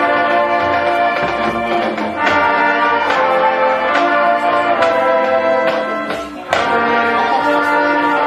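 Marching band brass section playing held, full chords with sharp accented hits. The sound dips briefly about six seconds in, then the band comes back in with a loud accented chord.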